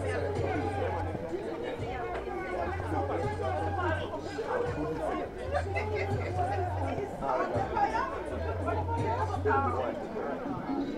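Many voices chattering at once around the pitch, with music playing under them: a deep bass note sounds in long pulses about every three seconds.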